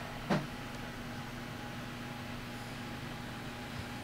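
Steady low electrical room hum, with one short sharp sound about a third of a second in.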